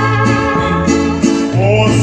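Mariachi band music with a jazz touch: violins hold sustained notes over a bass line that steps between notes. A singing voice comes in near the end.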